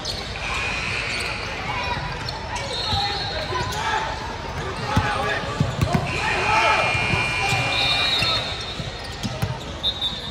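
A basketball dribbled on a hardwood gym floor, with a quick run of bounces about halfway through, and sneakers squeaking in short high squeals. Voices chatter across the large, echoing hall throughout.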